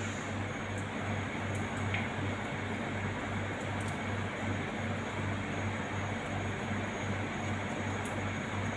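Steady room noise: an even hiss with a low hum that pulses about two to three times a second, with no clinks of the whisk or pot.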